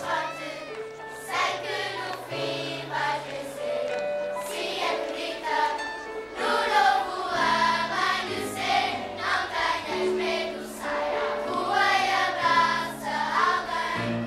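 Children's choir singing together over instrumental accompaniment, with steady low notes moving under the voices.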